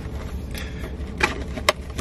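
Plastic carry-out bag and food packaging being handled inside a parked car, with a couple of sharp crinkles, the loudest near the end, over the steady low hum of the idling engine and air conditioning.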